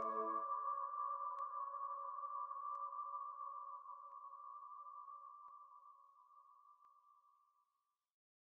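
Final held chord of an a cappella nasheed, made by voice only and heavily reverberated. Its low notes drop out about half a second in, leaving a high ringing tone that slowly fades away. Faint ticks sound about every second and a half.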